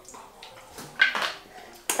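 Quiet sipping and swallowing of water from a plastic bottle and a glass to cleanse the palate, with a short sharp sound about halfway and a sharp knock near the end.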